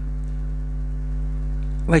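Steady low electrical hum, a stack of even, unchanging tones with no other distinct sound; a man's voice begins right at the end.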